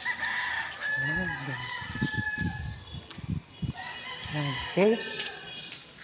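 A rooster crowing: one long, drawn-out call that holds nearly level for about two and a half seconds, followed by a few low thumps.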